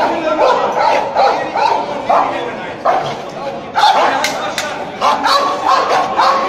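Police dog barking several times amid loud shouting from a crowd of men.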